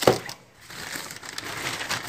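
Plastic grocery packaging crinkling and rustling as items are handled on a counter, after a sharp knock right at the start.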